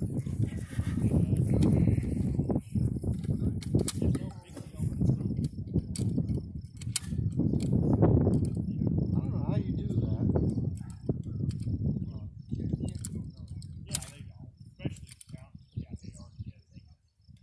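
Wind buffeting the microphone, a gusty rumble that swells and fades, with a few sharp clicks and one louder crack near the end.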